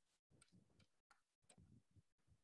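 Near silence on a call line, with a few very faint ticks.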